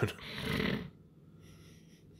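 A short, breathy laugh lasting under a second, then quiet.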